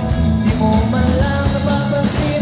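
Live rock band playing loudly through a concert PA: electric guitars and a drum kit.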